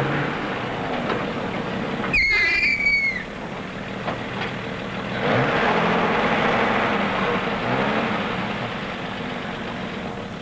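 An old pickup truck's engine running as it pulls up to a gas pump, loudest for a few seconds in the middle. A short high squeal falls in pitch about two seconds in.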